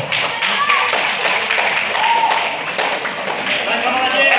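A small crowd of spectrators clapping in quick, scattered claps, with voices talking and calling out over it.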